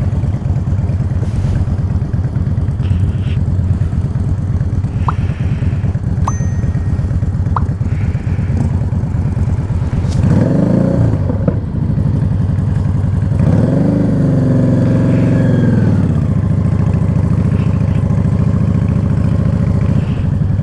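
Yamaha Drag Star 650's V-twin engine idling steadily, revved up and let fall back twice, once about halfway through and again a few seconds later.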